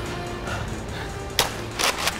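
Background music, with two sharp snaps of toy blaster shots in the second half, the second slightly longer.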